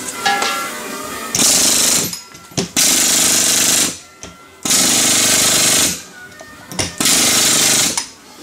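Thor 14D heavy-duty pneumatic rock drill hammering with its chisel bit on a wooden block, run in four loud bursts of about a second each.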